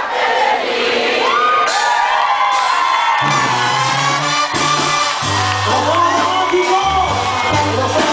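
A live crowd cheering and shouting, then a Mexican banda with clarinets starts playing about three seconds in, with a low bass line of held notes under it.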